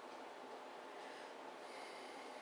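Faint, steady hiss of room tone with no distinct event.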